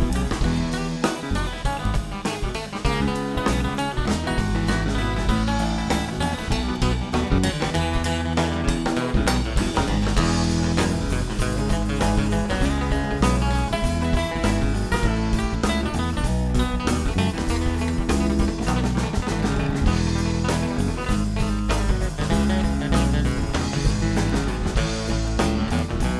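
A live band playing an instrumental passage with electric and acoustic guitars, bass and drum kit, continuous and steady in level.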